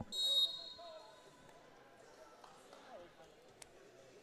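A short, high-pitched tone lasting under half a second just after the start, the loudest sound here, followed by faint background voices in a large hall and a single click near the end.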